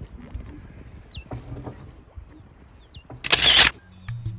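A bird's short falling whistle, heard twice, over a low rumble and light water noise around a poled wooden canoe drifting on a river. Shortly before the end a loud half-second rush of noise cuts in, the loudest thing here.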